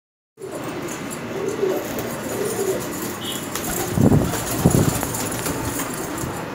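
Domestic pigeons cooing, with two louder low calls about four and four and a half seconds in.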